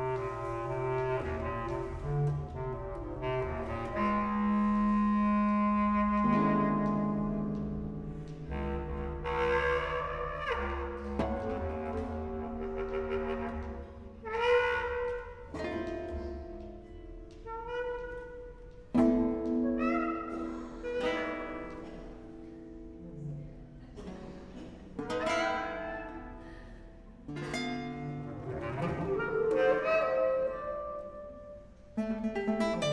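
Free improvisation for clarinet and eight-string Spanish guitar: long held clarinet notes, with a low sustained line a few seconds in, over plucked guitar notes. In the second half several sharp guitar plucks and chords ring out and fade.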